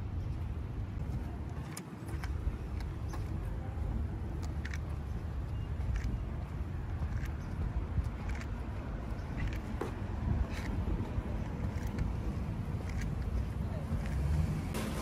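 Steady low outdoor rumble of a parking lot, with faint footsteps on concrete pavement about once a second.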